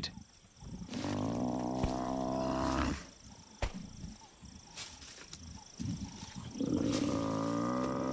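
An African buffalo bull bellowing as lions hold it down: two long, drawn-out cries of distress, the second starting near the end.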